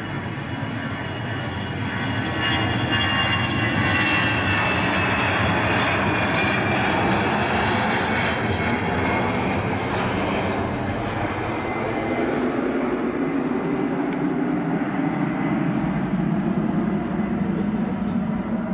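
Airbus A319 twin jet engines at takeoff thrust during the takeoff roll and climb-out. A high whine falls in pitch as the airliner passes, loudest in the first half, then gives way to a deeper rumble as it climbs away.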